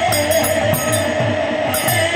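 Devotional kirtan music: a sung melody over a khol barrel drum whose low strokes drop in pitch, about four a second, with evenly spaced strokes of small metal hand cymbals.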